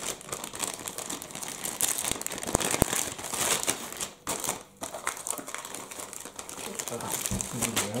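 Clear plastic bag crinkling and rustling as hands work a camera mount out of it, with a short lull about halfway through.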